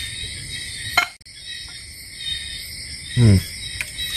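Night chorus of crickets and other insects, a steady high-pitched shrilling, with one brief click about a second in and a man's short 'uhm' near the end.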